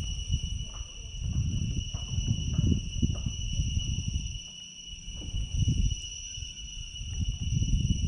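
Insects droning, a continuous high whistle that holds one steady pitch, over an uneven low rumble.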